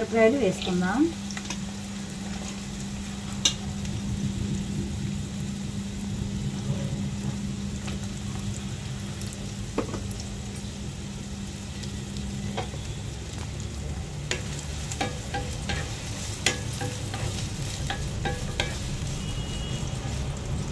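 Chopped onions and green chillies sizzling as they fry in oil in a nonstick kadai, with scattered sharp clicks and pops over the steady frying noise.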